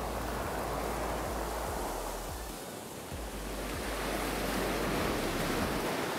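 Surf breaking and washing up the beach in a steady rush of water, easing off about halfway through and building again.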